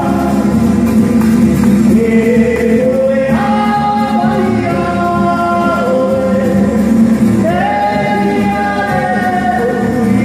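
Live Polynesian dance music: a group of voices singing long held notes in harmony over guitar accompaniment, sliding up to new chords twice, about three and seven and a half seconds in.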